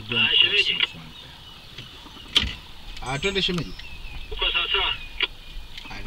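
Indistinct voices of passengers talking in short bursts over the low, steady running of a safari vehicle on a dirt road, with one sharp knock about two and a half seconds in.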